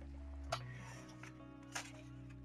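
Faint background music of steady held notes, with two brief paper sounds, about half a second in and again near the end, as a hardcover artbook is opened and its pages are turned.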